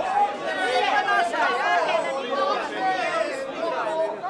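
Crowd chatter: many people talking at once, close around, with no single voice standing out.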